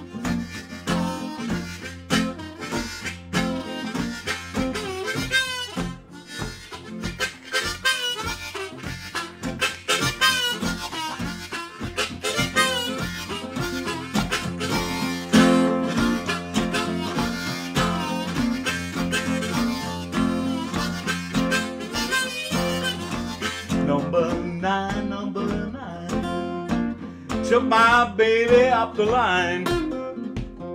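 Blues harmonica played in a neck rack, with bending notes, over a steady rhythm strummed on an archtop guitar, at a slow tempo.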